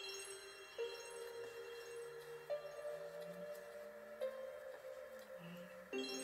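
Quiet background music: soft, sustained chime-like notes that move to a new pitch every second and a half or so.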